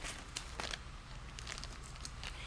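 Faint rustling with a few light crinkles and ticks as sheets of cross-stitch fabric and a plastic-bagged floss pack are handled and shifted on a tabletop.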